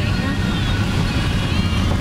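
Steady low road and engine rumble heard from inside a moving car's cabin on a highway, with faint voices in the background.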